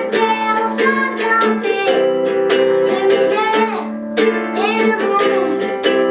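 A young boy singing a self-composed song while strumming a small acoustic guitar in a steady rhythm.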